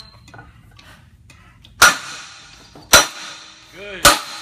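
Sledgehammer striking the sliding block of a Punisher forcible-entry trainer twice, about a second apart, in a simulated door breach. Each blow is a loud, sharp clang with a ringing decay.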